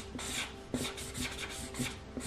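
Felt-tip marker rubbing back and forth on paper as a drawing is coloured in, a quick run of scratchy strokes, several a second.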